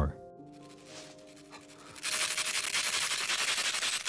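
Soft held tones, then about two seconds in a loud, harsh rasping noise starts.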